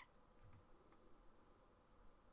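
Computer mouse clicks: one sharp click, then a quick double click about half a second later, over near-silent room tone.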